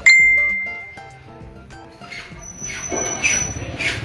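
A single bright ding, like a struck bell or chime, sounds at once and rings out, fading over about a second. A thin, steady high tone follows later.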